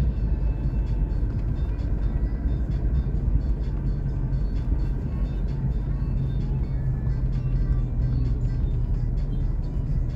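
Steady low road and engine rumble heard from inside a car's cabin while driving, with music playing over it.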